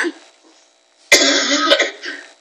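A woman coughs once about a second in, a sudden burst lasting under a second, heard over a video call.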